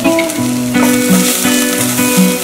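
Chopped onions sizzling as they fry in oil in a saucepan, the sizzle growing stronger a little under a second in, under background acoustic guitar music.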